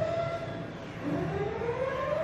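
Wailing alarm siren of a dark ride's show effects, sounding the ship's emergency. Its pitch sinks slightly, then rises steadily again from about a second in.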